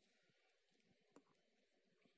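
Near silence: faint room tone, with one faint click a little over a second in.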